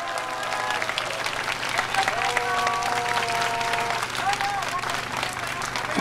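Crowd applauding steadily after a speaker's appeal for support. Around the middle, a single voice calls out in a long drawn-out shout over the clapping.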